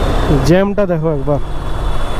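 A man speaks briefly near the start over the steady low noise of a KTM 390 Adventure motorcycle riding slowly in heavy road traffic.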